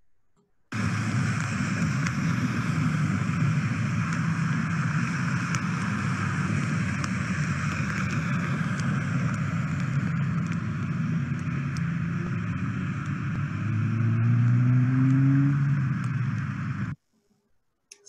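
Street-side rain runoff: a steady rushing of water running along the curb and pouring into a storm drain, starting suddenly about a second in and cutting off abruptly near the end. Near the end a passing vehicle's engine rises in pitch over it.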